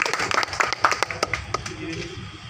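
A small crowd clapping, with voices mixed in, greeting an award presentation; the clapping thins out near the end.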